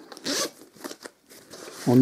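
The zipper of a fabric insulated carry bag's back pouch being pulled, a short rasping run less than half a second in.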